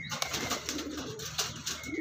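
Andhra pigeons (domestic pigeons) cooing softly, with a few light clicks.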